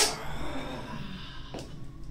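A sharp knock right at the start, then a man's breathy exhalation from exertion, fading out over about a second and a half.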